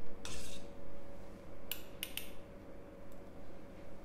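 A metal spatula clinking and scraping against a stainless steel bowl and a small glass dish while thick gel serum is scooped out, with a few sharp clinks, three of them close together around the middle.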